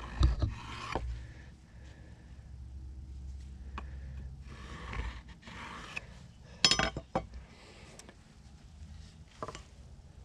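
Pencil scratching along an aluminium speed square on a wooden board, with light clinks and knocks as the square is shifted and set down; the sharpest knock comes about two-thirds of the way through.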